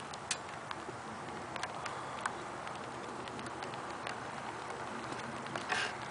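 A few faint, irregular ticks and clicks scattered over a steady background hiss.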